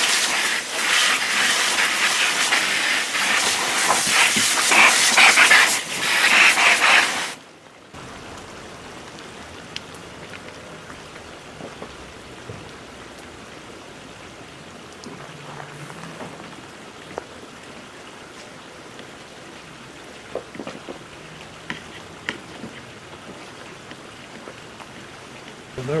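Airless paint sprayer gun with its nozzle off, jetting a spray of paint into a plastic bucket: a loud hiss for about seven seconds, briefly broken near the end, then cut off. Only faint clicks of handling follow.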